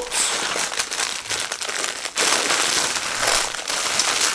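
Clear plastic packaging crinkling and rustling as a rug is pulled out of its bag, with a brief lull about two seconds in.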